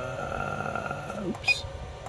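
A single short, high beep-like click from a keypad button press on an SMA Sunny Island inverter, about a second and a half in, as the menu steps to the next item.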